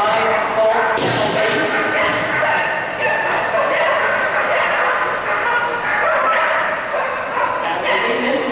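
Dogs barking and yipping over the steady chatter of a crowd, with a few sharp yips standing out.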